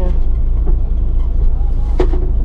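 Steady low rumble of a bus's engine heard from inside the passenger cabin, with snatches of voices over it.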